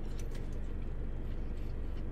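A steady low hum inside a parked car, with a few faint clicks and taps as fast-food packaging and a sauce cup are handled.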